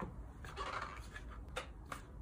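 A small cardboard product box and its packaging being handled and opened by hand: quiet rustling and scraping with a few light clicks, one about a second and a half in and another just after.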